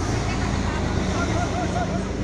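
A city bus's engine running steadily as the bus pulls away, with people talking over it.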